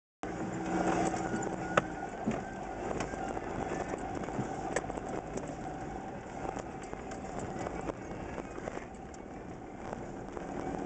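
A vehicle driving over a rough dirt track, heard from inside: steady engine and tyre noise with scattered sharp knocks and rattles, the loudest just under two seconds in.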